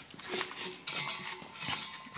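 Light metallic clinking and ticking from a reel mower's cutting unit being handled and turned, several irregular clinks with a brief ring to them.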